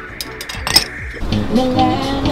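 A few sharp clinks of serving utensils against buffet dishes in the first second, then music comes in after about a second.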